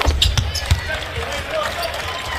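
Basketball dribbled on a hardwood court: several short, sharp bounces over steady arena background noise.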